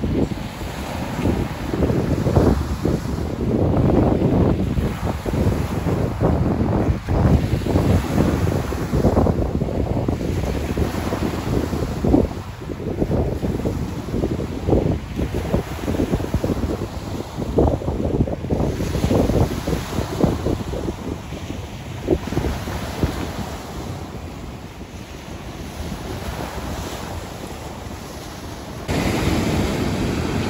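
Sea surf breaking and washing over a pebble beach, surging in waves, with wind buffeting the microphone. It steps up suddenly near the end.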